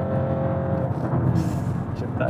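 Lamborghini Urus's tuned 4.0-litre twin-turbo V8 heard from inside the cabin at high speed: a steady low drone, with a note that falls away about a second in and a short hiss shortly after.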